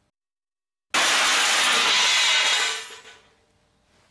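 A sudden, very loud crash that starts about a second in, holds for about two seconds and then dies away.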